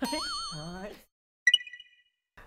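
A wavering, drawn-out voice for about the first second, then a single short, bright ding, a bell-like chime about one and a half seconds in that rings briefly and stops.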